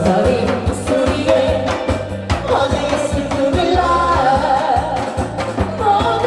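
Loud amplified singing over a backing track, with a wavering sung melody over a steady bass and a regular beat.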